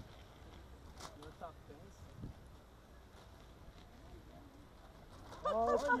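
Quiet open-air background with a low steady rumble and a few faint clicks, then about five and a half seconds in a man calls out loudly ("Olha!"), his voice swooping up and down in pitch.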